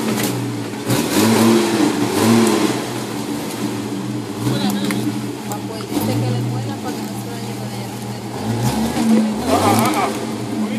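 Off-road SUV engine revving up and dropping back in repeated surges as the vehicle crawls slowly over rocks and mud.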